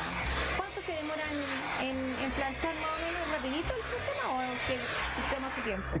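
People talking over a steady high hiss from a steam iron pressing a straw chupalla's brim. The hiss stops just before the end.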